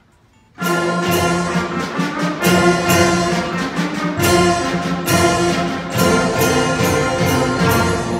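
Student concert band of brass, woodwinds and percussion coming in loudly about half a second in and playing a piece with sustained chords over a regular beat of drum hits.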